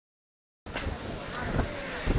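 Silence for about the first half-second, then the sound cuts in abruptly: wind buffeting the microphone with faint voices in the background.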